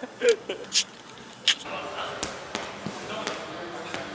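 A heavy rubber medicine ball bouncing on a rubber gym floor: a string of sharp thuds at uneven intervals, the loudest in the first second.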